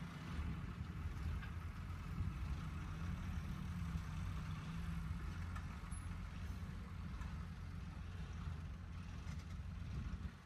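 Low, steady rumble of distant heavy diesel engines: a tipper truck driving across the site and an excavator working.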